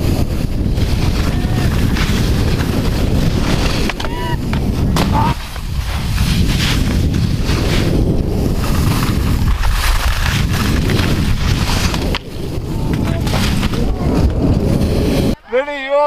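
Loud rushing wind noise on an action camera's microphone, mixed with skis scraping over snow, while skiing downhill through moguls. It cuts off abruptly near the end and a voice follows.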